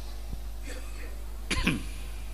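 A man clears his throat with a short, sharp cough about one and a half seconds in, picked up by his handheld microphone.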